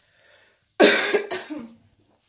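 A woman coughing: a sudden, loud run of about three coughs starting about a second in and lasting about a second.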